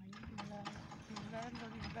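A person's voice held on long, steady notes, with short sharp clicks scattered over it.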